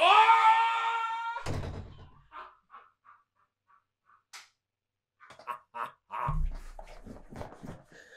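A man's drawn-out shout lasting about a second and a half, ended by a door shutting with a thud. Then come scattered light knocks and footsteps, and a second low thump a little after six seconds in.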